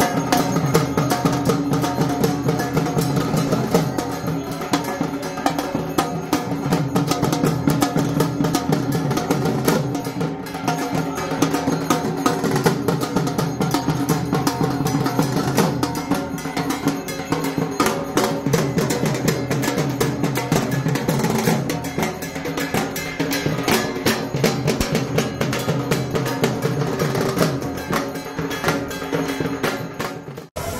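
Dhak, the large barrel drums of Durga Puja, played by a group of drummers in a fast, dense, unbroken rhythm.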